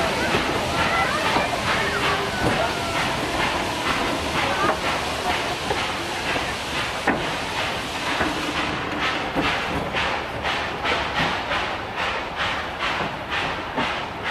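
Puffing Billy's narrow-gauge NA class steam locomotive 12A hauling its carriages across and away from a timber trestle bridge. The wooden carriages roll over the rails amid steam hiss. In the second half a steady rhythm of exhaust chuffs comes through, about two a second.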